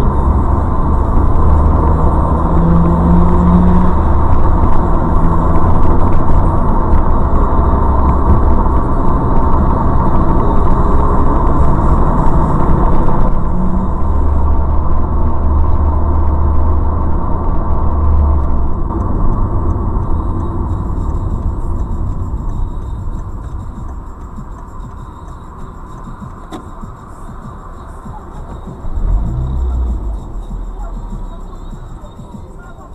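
Vehicle engine and road rumble, loud and steady at first, changing abruptly about 13 seconds in and growing quieter over the last third.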